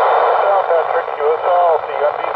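Satellite downlink heard through an FM ham radio receiver: a steady loud hiss of weak-signal noise with a faint, broken voice showing through it now and then.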